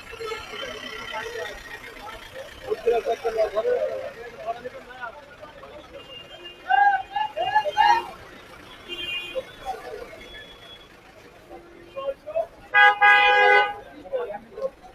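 Vehicle horn honking once for about a second near the end, the loudest sound, over the chatter and calls of a crowded street market.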